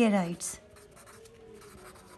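Faint scratching of a pencil on paper as a word is written out by hand.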